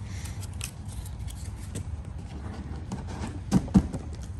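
Paper dollar bills rustled and flicked by hand as they are counted, with light snaps and rustles and two sharper clicks near the end, over a low steady hum.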